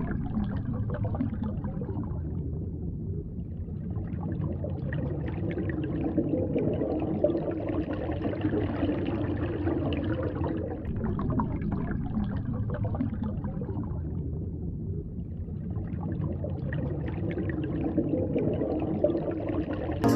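Muffled underwater sound: a steady low rush of water with faint crackling and gurgles.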